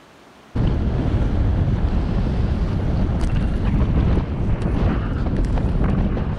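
Wind buffeting the microphone of a camera on a moving road bike: loud, steady wind noise that cuts in suddenly about half a second in, after a brief faint hush.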